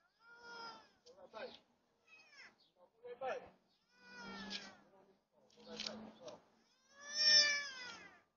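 A young child's voice crying out or whining in a series of high, drawn-out calls that fall in pitch, about seven in all, the last near the end the loudest, picked up thinly by an outdoor security camera's microphone.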